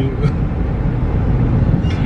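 Steady low rumble of a car driving, heard inside the cabin: road and engine noise.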